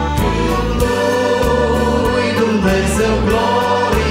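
A small mixed vocal group singing a Romanian Christian hymn through microphones, accompanied by a Yamaha electronic keyboard with a steady beat.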